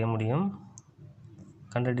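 A man speaking Tamil, with a pause of about a second in the middle that holds a few faint sharp clicks.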